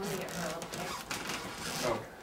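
Brief speech, a couple of words, over a steady rustle of a hand handling the camcorder close to its microphone.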